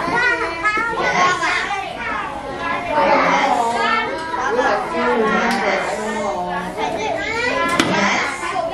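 A classroom full of young children talking over one another at once, a steady busy chatter of many overlapping voices. There is a single sharp click near the end.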